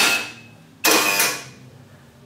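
Smart card proximity reader beeping as a card is held to it, with a loud noisy clack from the electric rim lock releasing. It happens twice, about a second apart, and each fades out over about half a second.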